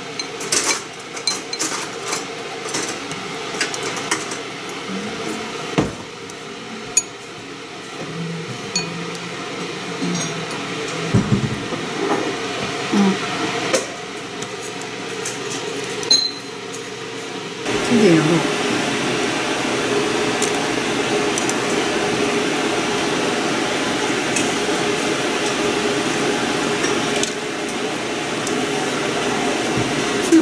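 Wooden chopsticks tapping and scraping against ceramic bowls in irregular light clicks while pork rolls are turned in flour and panko. About 18 seconds in, a steady rushing noise comes on and keeps going.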